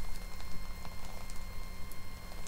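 Steady low electrical hum with a few faint, scattered clicks and rustles.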